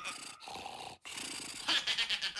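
A cartoon character's throaty, growl-like vocal sound, breaking briefly about halfway through. It turns into quick rhythmic pulses near the end.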